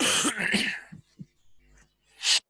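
A person coughs once, a loud, harsh burst in the first second, followed by a few faint short sounds.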